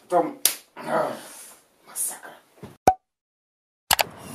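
A sharp slap, a hand striking a face, about half a second in, among short vocal sounds; a single sharp click follows near the three-second mark.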